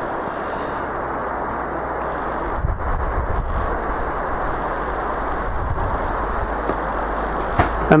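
Steady rushing noise of wind on the microphone, with a low rumble joining in from about two and a half seconds in.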